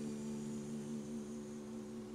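A steady low hum holding several pitches at once, one of them wavering slightly toward the end.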